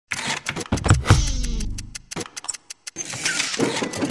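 Logo-intro sound effects: a run of sharp hits and a tone sliding downward, a short gap, then a noisy swell leading into music.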